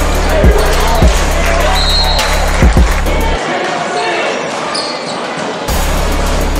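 Basketball bouncing on a hardwood gym floor: a few sharp thuds, about half a second in, at one second, and a quick pair near three seconds, over the steady chatter and noise of a gym crowd.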